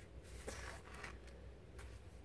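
Faint scraping of a pointed wooden modelling tool cutting through a soft clay slab, with a few light scratches and handling noises, over a low room hum.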